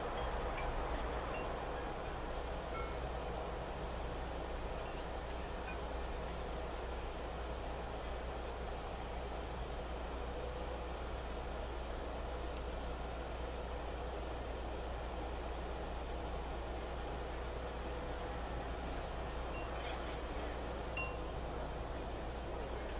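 Steady background hiss with faint, scattered high tinkles coming and going at irregular moments.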